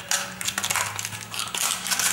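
Crinkling of a condom wrapper being handled in the fingers: a run of small, irregular crackles.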